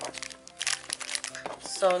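Plastic cookie-packet wrappers crinkling and crackling in rapid irregular bursts as the packs are handled, over steady background music.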